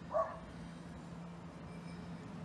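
A dog barking once, a short single bark just after the start, over a faint steady low hum.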